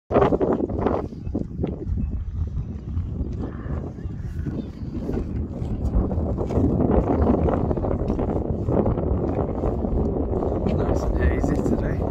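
Wind noise on the microphone, a steady low churning that runs throughout, with indistinct voices of people nearby.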